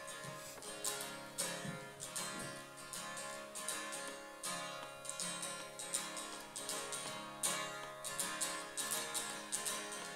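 Acoustic guitar strummed in a steady rhythm, chords ringing, playing the intro of a song before the vocals come in.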